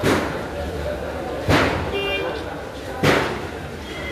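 Heavy thuds, one about every one and a half seconds, each fading away slowly, over faint voices.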